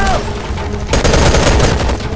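Rapid automatic assault-rifle fire, a dense burst of closely spaced shots about a second in, over a steady low rumble.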